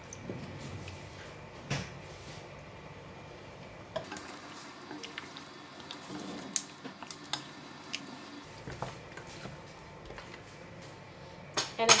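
A wooden spatula stirring coconut milk into a thick mutton curry in a stainless steel pan: soft wet stirring with scattered light knocks of the spatula against the pan.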